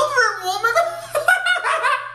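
A man laughing loudly and hard, a high-pitched laugh in quick bursts.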